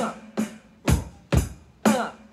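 Yamaha electronic drum kit played in a steady rock beat: bass drum and snare strokes alternating, about two strokes a second.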